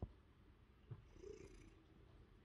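Ginger domestic cat purring faintly close to the microphone, with a soft knock at the start and another about a second in.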